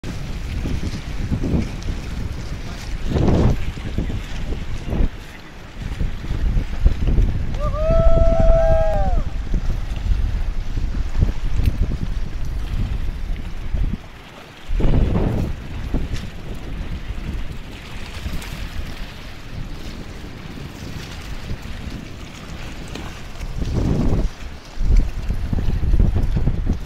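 Wind buffeting an action camera's microphone as a loud, uneven low rumble, mixed with the wash of small waves on a rocky shore. About eight seconds in, a short high-pitched call, rising slightly at its end, sounds over it.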